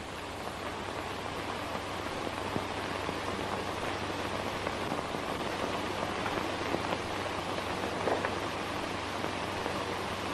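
Steady hiss over a low hum, with a few faint crackles: the surface noise of a worn 1930s optical film soundtrack.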